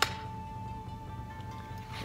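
One sharp click as a katana is slid fully home and its guard seats against the mouth of the sheath, followed by a single held note of background music.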